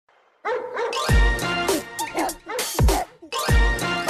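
Electronic theme-tune music starting about half a second in, with three deep falling bass drops, and bark-like sounds mixed into it.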